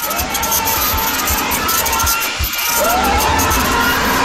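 Loud, harsh, distorted noise layered over music, with low thumps underneath. A swooping tone rises near the start and again just under three seconds in.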